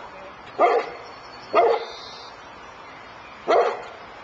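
Newfoundland dog barking three times: two barks about a second apart, then a third about two seconds later.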